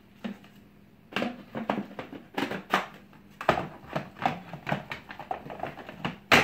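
Plastic parts of a Eureka upright vacuum being put back together: the filter pushed into the dust cup and the cup fitted onto the vacuum, in irregular clicks and knocks that start about a second in.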